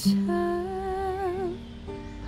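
A chord strummed on an acoustic guitar, then a woman's voice holding one long note with vibrato for about a second over the ringing guitar, fading near the end.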